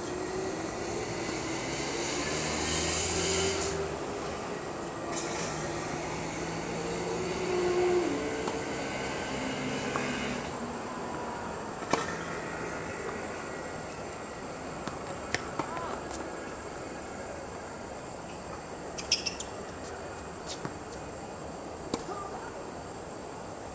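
Tennis balls struck by rackets in a rally: sharp single pops about twelve seconds in and several more in the second half. Under them a steady background rumble, with a droning tone through the first ten seconds.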